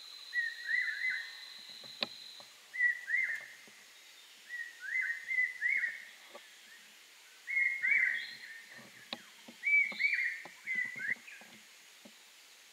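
An animal in the tree canopy calling in repeated groups of two to four short, high, arching chirps, a new group every second or two. A steady high insect whine fades out about two seconds in, and faint knocks are heard under the calls.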